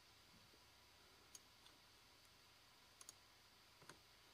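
Near silence: room tone with a few faint, sharp clicks of a computer mouse, including a quick pair about three seconds in.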